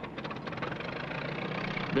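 An engine running steadily, mixed with irregular clicks and crackle, growing slowly louder.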